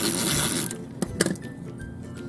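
A Xyron tape runner drawn along a paper strip, a short noisy zip lasting about half a second, then a plastic click about a second in as the dispenser is set down on the table. Light background music plays throughout.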